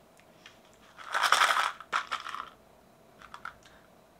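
Small sugar-coated chocolate buttons rattling and clattering as one is picked from a pack: two short rustling bursts about a second and two seconds in, then a few light clicks.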